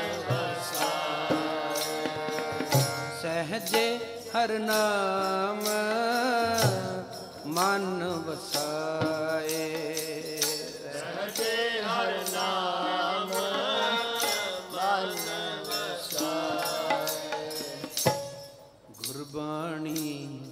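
Sikh keertan: a voice singing devotional verses to harmonium and tabla, with steady percussion strokes throughout. The sound drops away briefly about a second and a half before the end.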